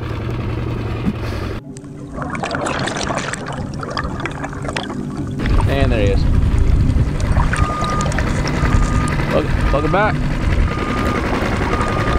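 Water sloshing and wind buffeting a camera at the lake surface, a dense low rush from about halfway through. A thin, high beep repeats evenly, a little faster than once a second, over the second half.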